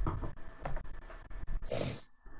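A person's voice making a few short, breathy sounds without words, the loudest near the end.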